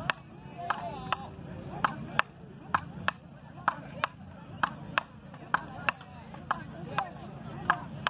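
Frescobol rally: wooden paddles hitting a rubber ball back and forth, sharp knocks in a steady rhythm of about two a second.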